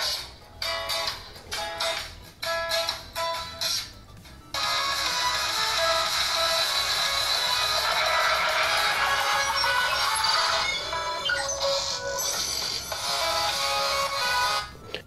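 Music from a YouTube video playing through a smartphone's bottom loudspeaker (Ulefone Be Touch), thin with almost no bass. For about the first four seconds it is short rhythmic stabs, then it becomes a fuller, steady passage.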